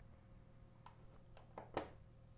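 Near silence with three faint clicks of a computer mouse; the last, near the end, is a little louder.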